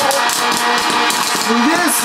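Electric hot-air popcorn popper running: its fan gives a steady whoosh as popped corn is blown out of the chute.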